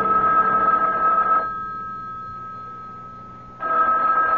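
Telephone bell ringing: one ring lasting about a second and a half, a pause, then a second ring starting near the end.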